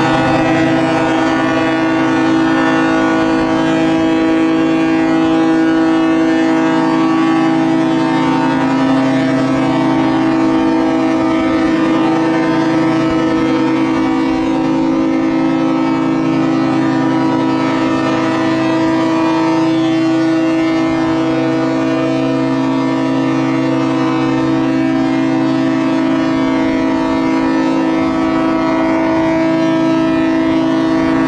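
Many ships' horns on the river sounding together in a sustained salute, a steady chord of several pitches held throughout without a break.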